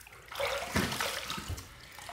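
Water splashing at a bathroom sink as a freshly shaved face is rinsed after a razor pass, lasting about a second and a half.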